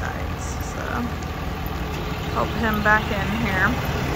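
Heavy-duty pickup truck towing a fifth-wheel travel trailer, driving slowly up with a low, steady engine rumble.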